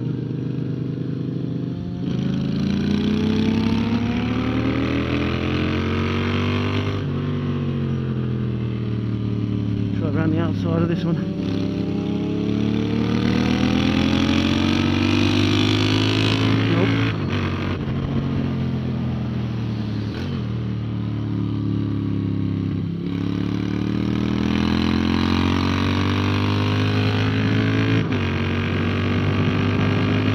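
Moto Guzzi V7's air-cooled transverse V-twin under way at track speed, its pitch climbing under acceleration and falling back several times, with sudden drops about seven seconds in and again past twenty seconds as the throttle is shut or a gear changed. Wind noise rushes over the bike-mounted microphone throughout.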